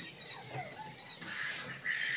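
Quail chicks in a brooder cage peeping faintly, a scatter of short chirps.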